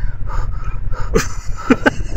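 A woman's voice making short, quick vocal sounds, about five a second and each falling in pitch, starting about a second in, over a steady rumble of wind on the microphone.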